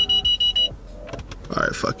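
Car parking-sensor warning beeping fast, about seven short high beeps a second, as the car closes in on an obstacle while parking; the beeping cuts off suddenly a little under a second in.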